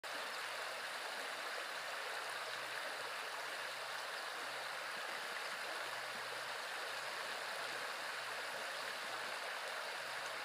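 Shallow river riffle running over a gravel bar: a steady, even rush of flowing water.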